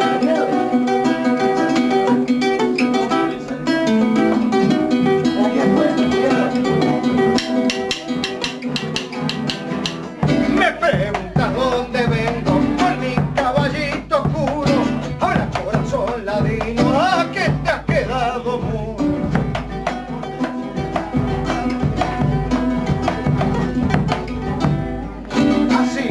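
Argentine chacarera played live as an instrumental interlude: a guitar strummed in the chacarera rhythm. About ten seconds in, a deep drum, the bombo legüero, comes in under it along with a wavering melodic line.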